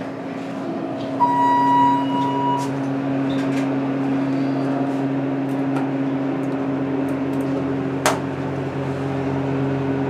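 Hotel elevator: a single electronic beep about a second in, lasting about a second and a half, then a steady low hum from the elevator car, with one sharp click near the end.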